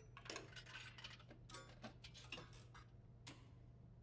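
Faint, irregular mechanical clicks and ticks, about ten in all, from a hand working the controls of a machine, over a steady low hum.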